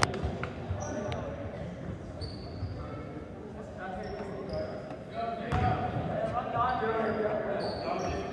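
Sounds of a basketball game in a gym hall: a basketball bouncing on the hardwood floor, short high sneaker squeaks scattered throughout, and voices of players and spectators, which grow louder about five seconds in.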